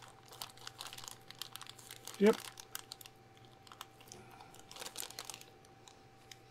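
Small clear plastic parts bag crinkling in the hands as it is turned over, with faint irregular crackles as the model kit tires inside shift.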